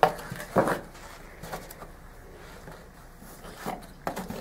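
A couple of brief soft knocks and handling sounds from the cardboard foam casting box being moved, the loudest just over half a second in, then quiet room tone with a few faint small sounds.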